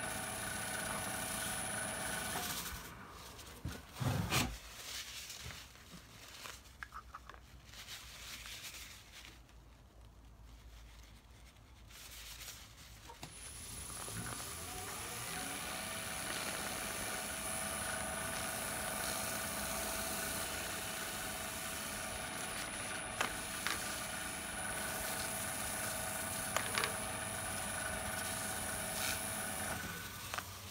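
Wood lathe motor running with a steady whine, switched off about two seconds in, a knock shortly after, then started again, its whine rising as it spins up and holding steady until it stops at the very end. A cloth is held against the spinning resin-and-wood piece to apply a finish.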